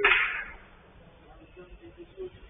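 A sharp crack-like hit dying away as a hiss within the first half second, then a quiet stretch with faint low rumble.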